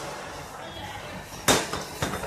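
Kitchen handling noise around a stainless steel mixing bowl as sugar goes in on butter, with a single sharp knock about one and a half seconds in.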